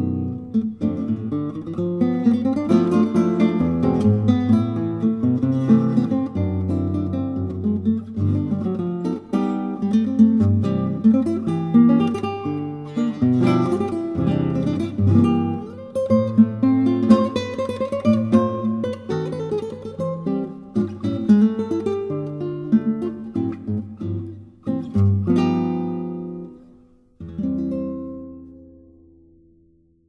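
Solo classical guitar playing a tango arrangement: plucked melody over bass notes and chords. Near the end the playing stops and a final chord is struck and left ringing as it fades.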